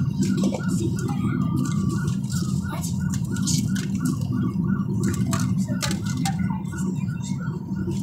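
Steady low rumble of road and engine noise inside a moving car's cabin, with faint voices and a few small clicks over it.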